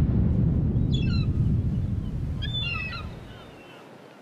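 A deep boom from a logo sting dies away over about three seconds. Two short, chirping bird calls sound over it, about one second and two and a half seconds in.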